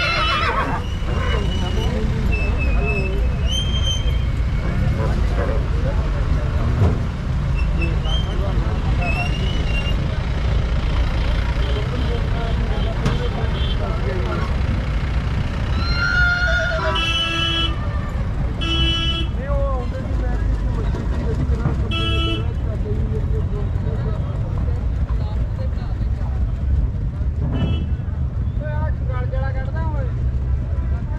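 Open-air horse-market ambience with a steady low rumble and distant voices. A horse whinnies about sixteen seconds in, followed by a few short toots over the next several seconds.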